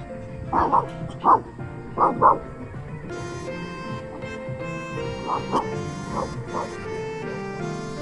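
A dog barks in short, sharp pairs: loud barks in the first two seconds, then quieter ones around five and six seconds in. Background music plays throughout.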